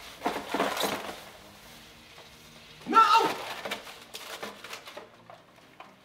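Liquid nitrogen boiling around an aluminium soda can submerged in a plastic tub, a steady seething with many small crackles. A short voice sound comes about three seconds in.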